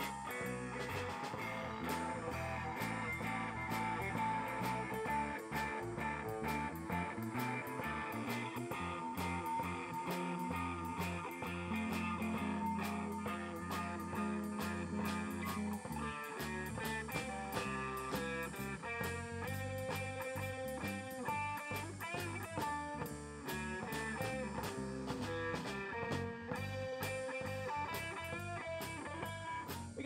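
Live rock band playing an instrumental passage without vocals: electric guitar, electric bass and drum kit.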